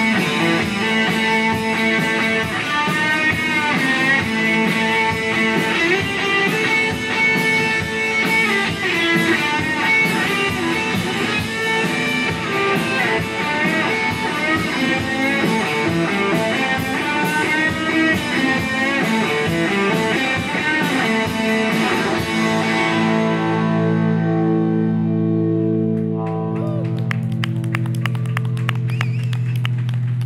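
Live rock band playing an instrumental passage: two electric guitars through small amplifiers over a drum kit. About 23 seconds in the drums and cymbals drop out and the guitars ring on in long sustained tones.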